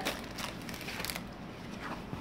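Rustling and light handling of a diamond painting canvas's plastic cover film and a clear plastic bag, with a few soft clicks.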